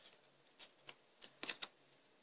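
Faint light clicks and snaps of tarot cards being handled and shuffled in the hand, a few scattered taps with a quick cluster about one and a half seconds in.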